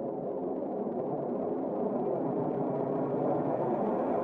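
Dark, droning synthesizer intro of an industrial metal song, slowly swelling in loudness before the band and vocals come in.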